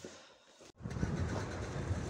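Faint room tone, then a sudden cut about three-quarters of a second in to louder, steady outdoor noise of a bus engine idling.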